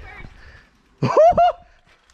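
A man's loud, brief excited shout, "Oh, f— yeah!", about a second in. Before it, the faint rattle of a mountain bike rolling over a dirt trail.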